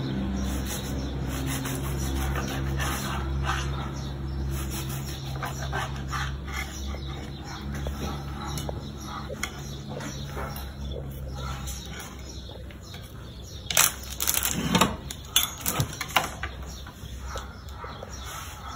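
Knife slicing a tortilla-wrapped roll on a plastic cutting board: soft, scattered taps over a steady low hum that stops about two-thirds of the way through. A few sharper knocks and clinks follow near the end as the pieces are handled.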